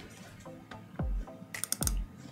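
Computer keyboard and mouse clicks as a computer is worked, over quiet background music, with two low thumps, one about halfway through and one near the end.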